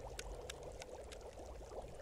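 Faint tinkering sound effect: a few small, sparse metallic clicks of a screwdriver and small parts being worked on a little device, over a low hiss.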